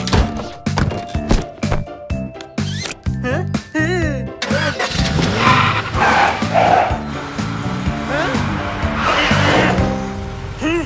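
Upbeat cartoon music with a steady beat and quick pitched sound effects. About halfway through, a noisier layer of cartoon car and traffic sounds comes in over the music, along with wordless cartoon voices.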